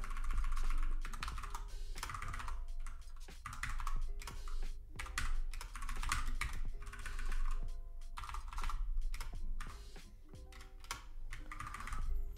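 Typing on a computer keyboard: quick, irregular keystrokes with short pauses, over quiet background music.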